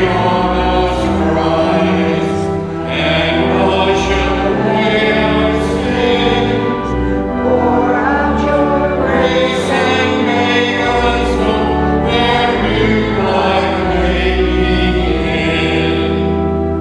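Many voices singing a hymn together in held, sustained chords over a steady low accompaniment.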